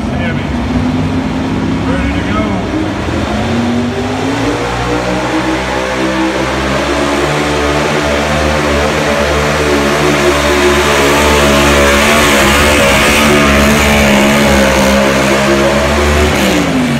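Super stock 4WD pulling truck, a Chevrolet pickup, revving up hard about four seconds in and then held at high revs under heavy load while it drags the weight-transfer sled; the engine pitch stays high and climbs slightly toward the end.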